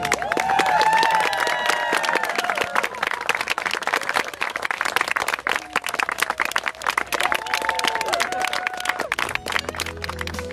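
Guests applauding with dense, steady clapping, with voices whooping and calling out over it near the start and again near the end.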